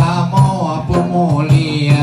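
Male voice singing a wavering, melismatic Acehnese chant, accompanied by hand strokes on a large rapa'i frame drum about every half second.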